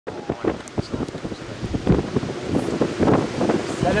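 Strong gusty wind buffeting the microphone in irregular blasts. A man's voice starts to speak near the end.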